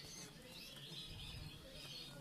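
Canaries chirping faintly in the background, a scatter of short high calls over low room noise.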